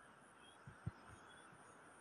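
Near silence: faint outdoor background with two soft, short low thumps a little under a second in.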